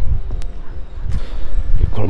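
Low, uneven rumble of a handheld camera microphone carried while walking, with footsteps and one sharp click about half a second in.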